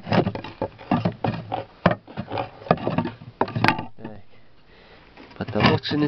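Wooden ceiling boards of a beehive being pried and torn off: a rapid run of wood cracks, creaks and knocks, with one sharp, loud crack about three and a half seconds in, a quieter pause, then more knocking near the end.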